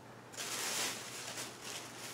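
Rustling of fabric as a garment is picked up and handled, starting about a third of a second in and fading out over the next second.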